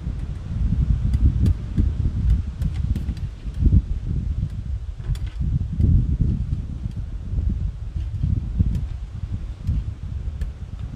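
Wind buffeting the microphone in uneven gusts, with scattered faint clicks of steel wire and pliers as a wire spiral is bent by hand.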